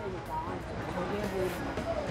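Faint murmur of background voices over a low steady hum of market street ambience.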